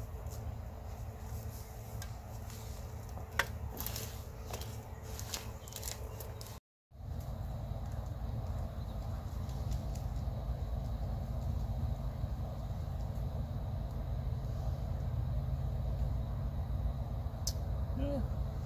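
Scattered crackles and snaps of dry mulch and sweet potato vines as plants are pulled from the soil, over a steady low rumble.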